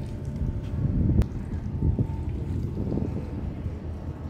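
Wind buffeting the microphone as a steady low rumble, with one sharp click about a second in.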